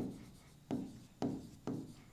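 Stylus writing on an interactive whiteboard screen: about five short strokes, each starting sharply and dying away, as words are written out.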